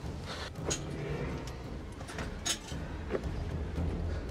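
Scattered clicks and scrapes of a climber's gloved hands and via ferrata gear against rock and iron rungs in a narrow cave, the sharpest about two and a half seconds in, over a steady low rumble.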